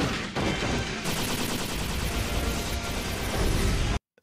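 Sustained rapid weapon-fire sound effects from an animated battle scene, with background music underneath.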